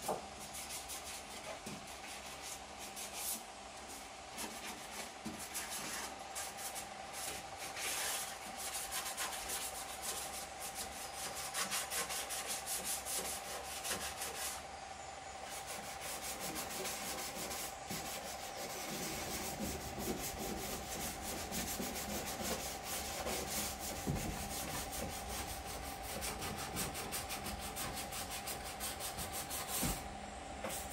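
Hand sanding bare sheet metal inside a Suzuki Swift's rear body shell: a continuous scratchy rubbing of abrasive on steel in fast, repeated strokes, with a steady faint hum underneath.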